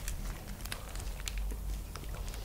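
Faint crinkling and small clicks of a plastic snack-bar wrapper being handled, over a low steady hum.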